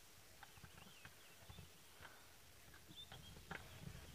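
Faint bush sounds: scattered twig-like snaps and soft low thuds, the sharpest snap near the end, with a few short bird chirps.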